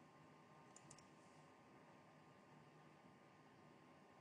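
Near silence: faint room tone with a couple of small, faint clicks about a second in.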